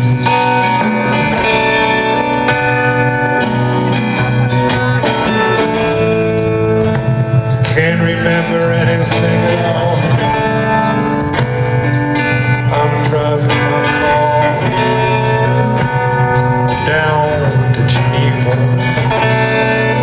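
Live rock band playing a blues number, with guitar over a steady low bass line, heard loud and even from the audience of a large arena.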